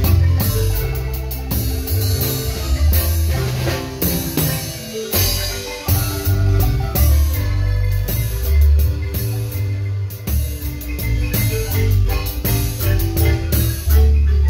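Marimba ensemble playing: several players striking the wooden bars of one large marimba, over a steady bass line and drum kit.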